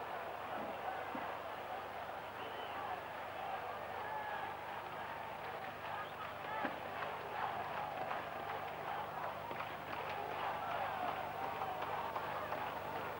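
Football stadium crowd noise: a steady murmur of many spectators with scattered shouts, on an old match recording.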